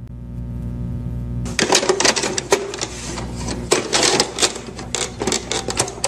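Vinyl-record-style crackle and clicks over a low steady hum, the opening of a lofi track. The crackling turns dense and irregular about a second and a half in.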